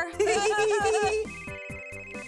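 Laughing, then about a second in a toy telephone starts ringing: a steady, high electronic trill.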